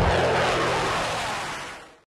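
F-15 Eagle fighter's jet engines rushing as it flies low overhead, a steady noise that fades out near the end.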